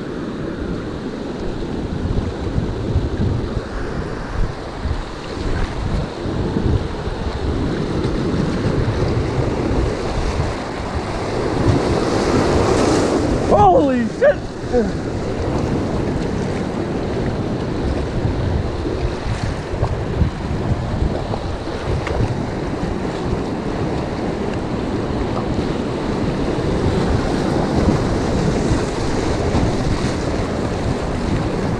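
Whitewater rapids rushing and splashing around a kayak hull, with wind buffeting the microphone. About halfway through comes a brief falling cry.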